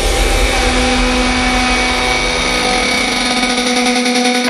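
Electronic background music in a drumless passage: a held synth chord over a steady rushing noise.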